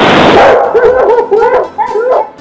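A watermelon strangled by rubber bands bursts open with a loud, noisy splat. It is followed by a quick run of short, high yelps, about four a second.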